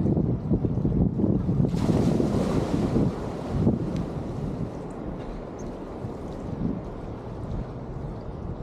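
Wind buffeting a handheld action camera's microphone while a hydrofoil surfboard rides over the water, with water rushing beneath. A brief hiss rises about two seconds in and lasts about two seconds, and the rush settles quieter from about four seconds in.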